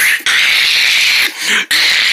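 A child's voice making loud, harsh hissing screeches as fight noises for toys, in two long stretches broken by a short pause about a second and a half in.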